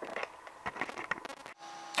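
Close handling noise: a quick run of small clicks, taps and rattles, as of cables and test probes being moved about, cut off suddenly about a second and a half in, followed by a faint steady hum.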